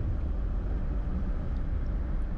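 Cabin sound of a 2006 BMW M5's S85 V10 engine pulling steadily at about 4,500–5,000 rpm at highway speed, mixed with road noise: an even, low drone.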